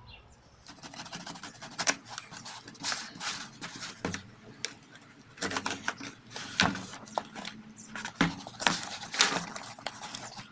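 Small knife slicing packing tape on a cardboard box and the flaps being torn and pulled open, a quick run of scratches, scrapes and cardboard rustles with a few sharper snaps, played sped up.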